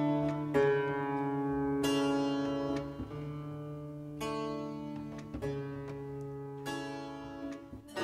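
Slow instrumental music intro: ringing chords struck about every second, each fading away, over a held low bass note.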